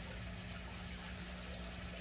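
Steady running and trickling water of an aquaponics system, with a steady low hum underneath.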